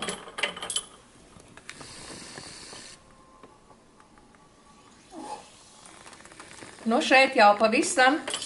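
Small clinks and clicks of a glass dropper bottle and test tubes being handled, followed by a brief faint hiss.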